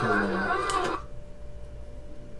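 A voice talking for about the first second, then a low, steady background hum.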